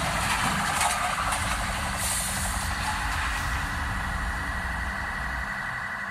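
Street traffic noise with a vehicle engine running steadily.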